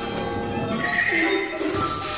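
Large chamber ensemble of strings, winds, piano and percussion playing dense contemporary concert music: many overlapping held tones, with a bright wavering high note about a second in and a burst of hissing high noise near the end.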